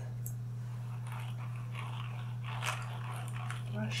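Soft, scratchy rustling close to the microphone, a few faint strokes of noise around the middle, over a steady low hum.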